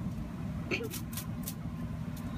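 Steady low rumble of distant road traffic. Near the middle there is a brief voice-like sound, followed by three quick sharp clicks.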